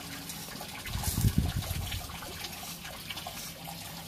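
Water trickling and running steadily in a filter installation, with a louder low knock and rustle a little over a second in while the plastic housing cap is worked loose with a wrench.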